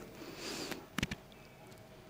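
Two faint, quick clicks about a second in, from a computer mouse button, over quiet room noise with a soft hiss at the start.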